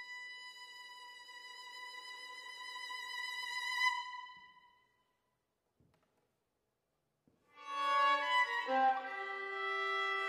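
Solo violin holding a high note with vibrato that swells and then fades away about five seconds in. After a silence of about two and a half seconds, the violin starts a new phrase of several notes that falls to a lower held note.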